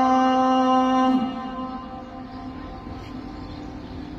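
The adhan (Islamic call to prayer) over the Grand Mosque's loudspeakers. A man's voice holds one long steady note that ends about a second in with a slight drop in pitch, then echoes away into a quieter pause between phrases.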